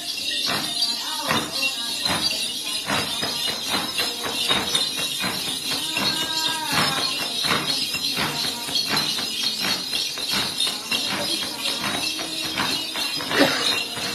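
Then ritual music: a jingling cluster of small bells shaken in a steady beat, about two strokes a second, over a plucked đàn tính lute.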